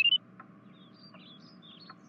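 A quick, loud chirp stepping up in pitch right at the start, then faint scattered bird-like tweets.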